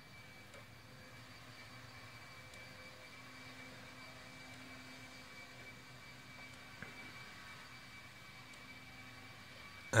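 Faint steady machine hum with a few steady tones over a low hiss.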